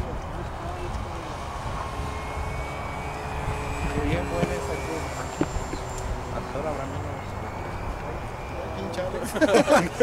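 Faint, distant whine of electric radio-controlled model airplanes' motors and propellers flying overhead, a thin steady tone that drifts slightly upward, over a low rumble.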